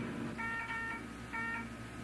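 Electronic medical monitor beeping: two short beeps about a second apart, over a faint hum.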